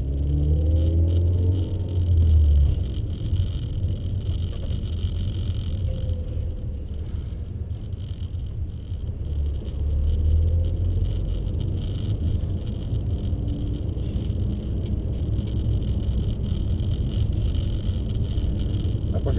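Peugeot RCZ R's turbocharged 1.6-litre four-cylinder heard from inside the cabin, pulling away with the engine pitch rising over the first couple of seconds. A second surge of engine sound comes about ten seconds in, over a steady low rumble of road and tyre noise.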